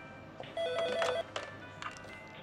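Corded desk telephone ringing once, a steady ring about two-thirds of a second long that starts about half a second in.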